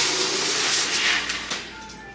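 Plastic grocery bag rustling as items are handled and pulled out of it, a steady rustle for about a second and a half that then dies away.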